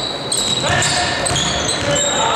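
Basketball game on a hardwood court: the ball being dribbled, and sneakers squeaking in several short, high-pitched chirps.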